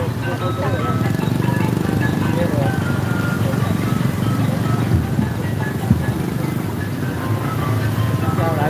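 Motorcycle and small-vehicle engines running at low speed on a dirt road, with music and people's voices over them. There are two short knocks about five and six seconds in.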